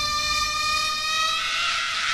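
Electronic dance track in a beatless breakdown: a held synthesizer chord that stops about one and a half seconds in, giving way to a hiss-like swell.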